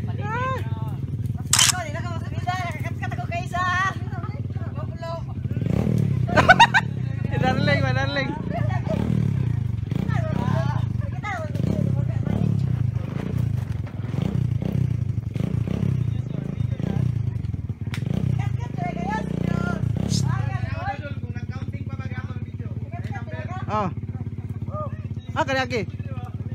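Dirt bike engine running off-screen, its revs swelling and falling every second or two, under the chatter of people talking.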